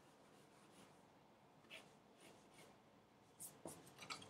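Faint pencil strokes on drawing paper: short, scattered scratches, with a few louder ones about three and a half seconds in.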